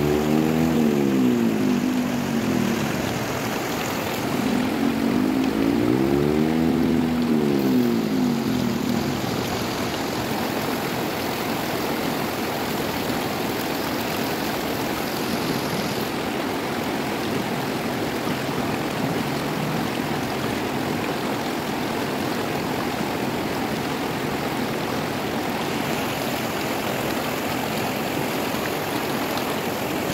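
Fast river rapids rushing steadily over rocks. Twice in the first nine seconds a humming sound rises and falls in pitch over the water.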